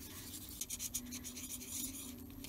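Metal ball-tipped embossing stylus rubbing over small punched paper leaves on a thick foam pad, shaping them: a faint, irregular scratching.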